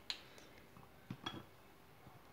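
Near silence, broken by three faint light clicks from a metal spoon and a ceramic bowl of chocolate and butter being handled, the last with a brief small clink.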